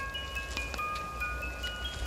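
Chimes ringing: several clear, high tones struck one after another, each ringing on and overlapping the others.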